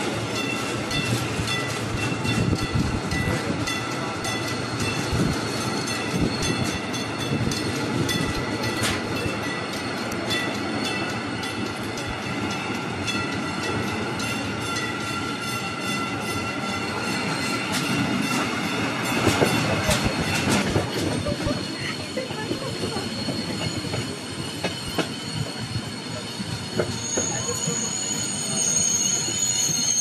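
A Rhaetian Railway Bernina line train rolling slowly, its steel wheels squealing on tight curves, with scattered clacks from the rails. A sharper, very high squeal sets in near the end.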